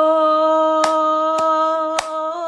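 A woman singing one long, steady held note at the end of a phrase. Two sharp clicks sound about a second in.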